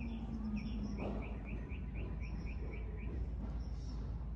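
A bird chirping in a quick even series of about a dozen short notes, about four a second, that stops about three seconds in. Under it are a faint high trill that comes and goes and a low steady outdoor rumble.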